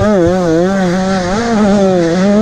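Dirt motorcycle engine running hard at steady high revs, its pitch wavering slightly up and down as the throttle is worked, heard on board from the rider's helmet.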